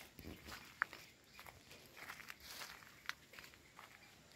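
Footsteps crunching and rustling over dry pruned tea twigs and fallen leaves, in irregular bursts, with two brief sharp clicks.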